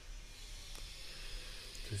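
Faint steady background hiss with one light click about three-quarters of a second in; a man's voice starts right at the end.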